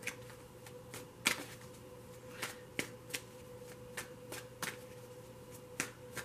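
Oracle cards being shuffled by hand: an irregular run of crisp flicks and snaps of card stock, over a faint steady hum.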